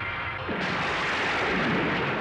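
A sound effect of a loud rumbling blast, like an explosion, cutting in suddenly about half a second in and carrying on.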